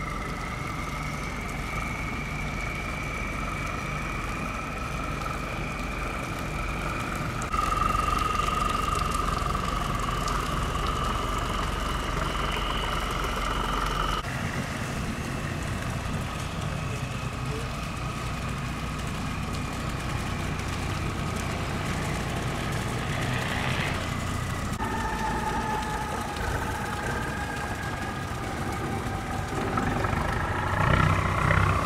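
Engines of passing river cargo barges running, a steady low drone with high whining tones over it. The sound changes abruptly about a quarter and half way through, and again near the end.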